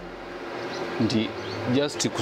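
A man's voice speaking a couple of short phrases, with pauses, over a faint steady buzz.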